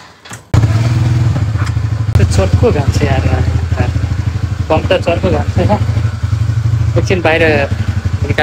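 TVS Ntorq 125 scooter's single-cylinder engine starting about half a second in and then idling steadily.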